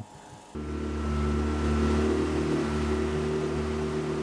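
Small tiller outboard motor running steadily as the open boat moves at speed, with the rush of water and wind; it starts about half a second in.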